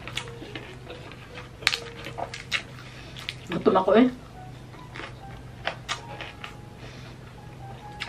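Close-up eating sounds: scattered sharp crunches and mouth clicks as a piece of crispy-skinned honey-glazed pork belly is bitten and chewed, with a short murmur about halfway through.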